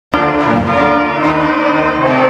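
High school concert band playing a march, woodwinds and brass together in held chords that change about every half second, cutting in at full volume right at the start.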